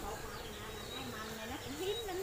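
A flying insect buzzing close by, its low hum wavering in pitch, dipping and then rising near the end.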